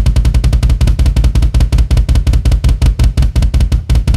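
Bass drum played with a double pedal in a fast, even stream of single strokes, about a dozen a second.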